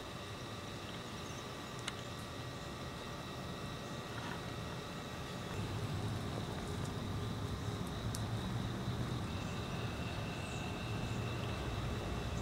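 Steady outdoor background rumble that grows louder about halfway through, with a faint, steady high whine above it.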